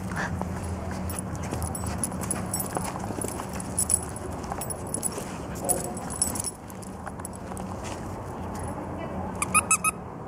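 Two small dogs playing, with light metallic clicking and jingling like collar tags and a quick run of high squeaks near the end, over a steady low hum.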